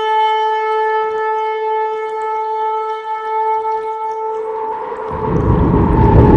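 A long shofar blast held on one steady note, fading out near the end. A deep swell of dark intro music rises in over the last second.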